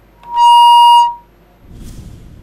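A loud steady electronic beep of about a second, one pitch near 1 kHz, on a failed live phone line to a reporter: the link has not connected. A brief low rumble follows near the end.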